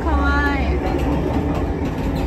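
Steady low rumble of a train-running sound effect playing in a replica railway carriage, with a voice talking over it near the start.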